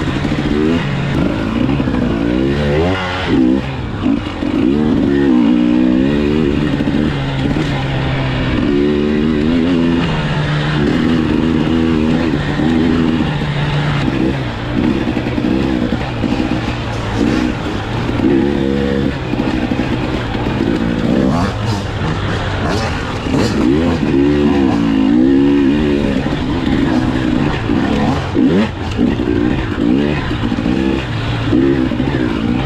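KTM dirt bike engine under race throttle, the revs climbing and dropping again and again as the rider gets on and off the gas.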